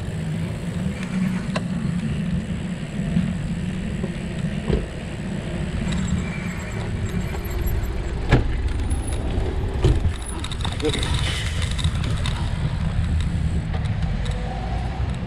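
Steady low rumble of a bicycle's knobbly front tyre rolling over paving and tarmac, picked up by a camera mounted on the front suspension, with a few sharp knocks as the bike jolts over bumps.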